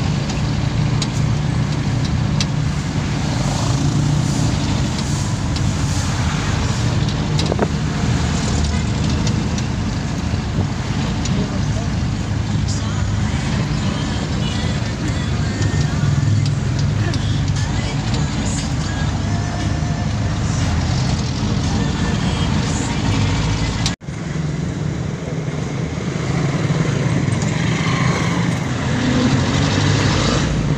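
Engine and road noise heard from inside a crowded passenger jeepney in motion: a loud, steady low rumble with voices in the background. The sound cuts out for a moment about three-quarters of the way through.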